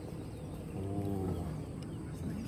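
A single low, drawn-out call about a second long, rising and then falling in pitch, over steady background noise.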